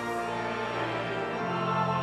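A choir singing slow, sustained chords, with the harmony shifting about one and a half seconds in.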